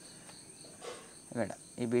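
Crickets chirring steadily in the background, a thin high-pitched insect drone, in a lull between words. A short voice sound comes about one and a half seconds in.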